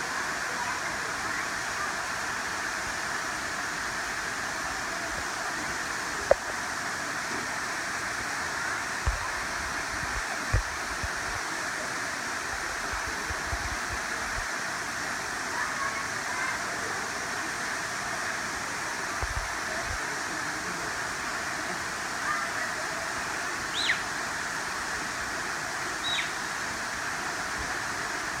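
Tall waterfall falling freely onto rocks: a steady, even rush of water. A few brief low thumps come through it, and two short high chirps near the end.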